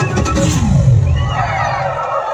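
Film soundtrack music of a Bollywood song sequence playing over cinema speakers. The drumbeat stops at the start and a deep falling swoop follows within the first second, under a gliding higher tone.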